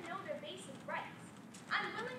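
A young woman's voice delivering a prepared speech in a steady, continuous flow.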